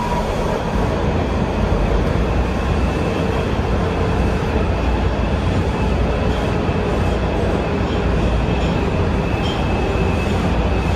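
Breda 3000-series Metrorail car running between stations, heard from inside the car: a steady loud rumble of wheels on the rails and running gear, with a faint thin high tone above it.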